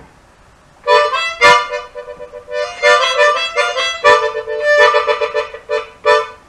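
Chromatic harmonica playing a short blues lick, starting about a second in: a run of held notes with a few sharp, punched attacks, and fast pulsing on the held notes in the later part.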